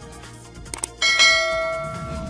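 Subscribe-animation sound effect: two quick mouse clicks, then a bell notification chime about a second in that rings on with several steady tones and slowly fades, over background music.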